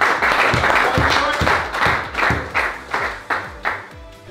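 A small group of players clapping together in applause, dense at first, then thinning to scattered claps that fade away near the end.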